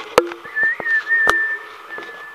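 A single held whistled note, wavering slightly at first and then steady for about two seconds. Sharp clicks sound over it, two of them loud.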